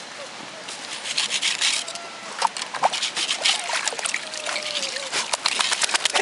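Water splashing and sloshing in a metal bucket as an English pointer plunges its head in after a live trout. The quick, irregular splashes start about a second in and keep going.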